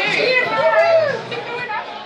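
Voices of several people chatting and exclaiming in a crowded bar, with one lively rising-and-falling voice in the first second, then quieter chatter.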